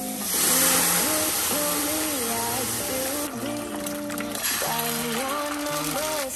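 Background music with a light melody, over the hiss of water poured into a hot stainless steel pan of julienned carrots. The hiss is loudest about a second in, as the water hits the hot steel and starts to steam.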